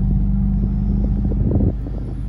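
Toyota 4Runner's V6 idling, a steady low hum heard inside the cabin, with a few soft knocks about one and a half seconds in.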